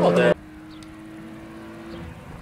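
BMW E36's engine revving hard, cut off abruptly about a third of a second in; after that only a faint, steady engine drone remains.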